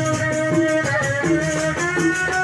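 Live traditional rudat ensemble music from Lombok: a melodic line of held notes that change pitch every half second or so, over hand drums and an even shaking rattle-like rhythm.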